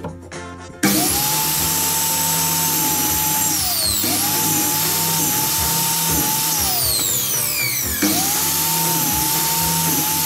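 Einhell mitre saw cutting timber battens. The motor starts about a second in with a steady whine, winds down and starts up again about four and eight seconds in.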